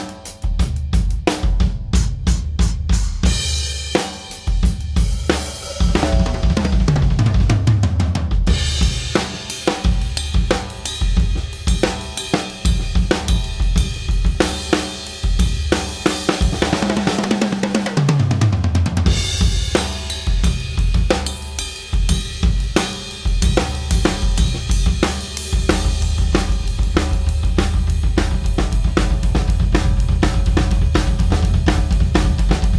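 TAMA Superstar Classic maple-shell drum kit played in a busy groove of snare, kick, hi-hat and cymbals. Two runs down the toms fall in pitch, about six and seventeen seconds in. Near the end it builds into a dense run of rapid low drum hits under the cymbals.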